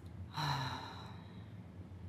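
A woman sighs once, a short breathy exhale with a little voice at its start, about a third of a second in.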